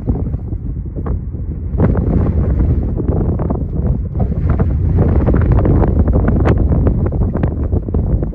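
Wind buffeting the microphone: a heavy low rumble in gusts that grows much louder about two seconds in.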